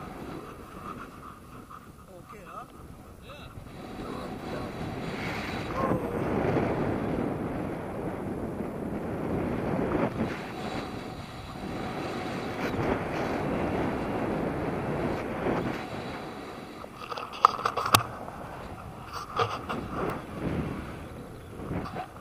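Wind rushing and buffeting over a small camera's microphone during a tandem paraglider flight, swelling for most of the stretch. A couple of sharp knocks follow near the end.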